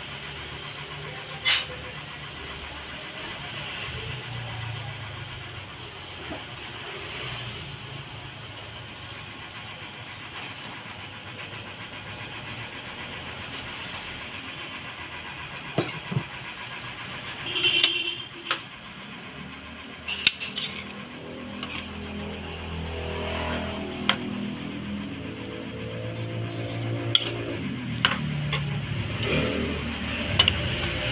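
Broth simmering in an aluminium wok on a stovetop: a steady low rumble, with occasional sharp clinks of a utensil against the pan, more of them in the last ten seconds as glass noodles are stirred in.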